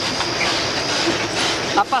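ALL freight train passing close by: a steady, loud rush of wheel-and-rail noise, with a faint high whine over it through the first second.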